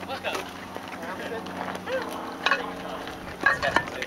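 Voices of players calling out and talking on a baseball field, with a few short, sharp knocks in the second half.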